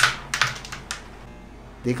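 Carrom striker flicked into a cluster of carrom coins: one sharp crack on impact, then a quick, uneven run of smaller clacks as the coins knock together and slide across the board, dying away after about a second.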